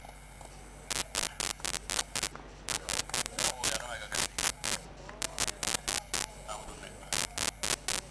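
Short sharp crackling clicks, several a second at an irregular pace, over a steady electrical mains hum. This is the feed from the third umpire's replay review as a run-out replay is rolled back and stepped through frame by frame.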